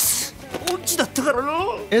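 A man's voice from an anime scene: a short, loud breathy outburst right at the start, which the speech recogniser took for laughter, then animated speech.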